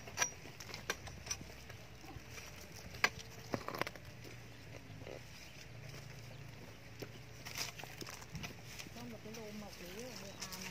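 Narrow long-handled digging spade chopping into dry soil and roots around a tree: a handful of short sharp chops and thuds spread out, the loudest about three seconds in.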